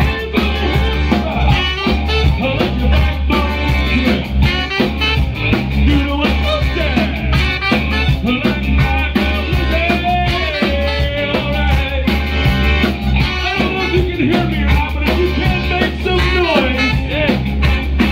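Live soul band playing an upbeat number, with electric bass, drum kit and saxophone, and singing over it.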